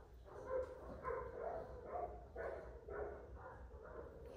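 Miniature poodle puppy making a run of soft, short vocalizations, about two a second.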